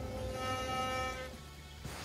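Electric toothbrush buzzing at a steady pitch while teeth are brushed, fading out a little past the middle.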